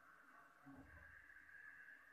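Near silence with a faint, slow hiss of breath drawn in through the nose during full yogic breathing, and a soft low bump just under a second in.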